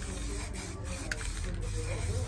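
Aerosol can of clear protective coat hissing steadily as it is sprayed over a freshly spray-painted picture.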